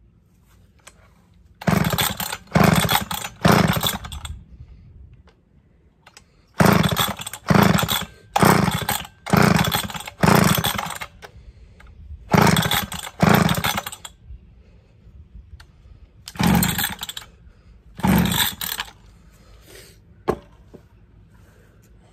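Recoil starter of a McCulloch MAC 10-10 two-stroke chainsaw being pulled over and over, each pull a short burst of engine cranking: about a dozen pulls in quick runs of three to five, then two single pulls. The engine does not catch and run.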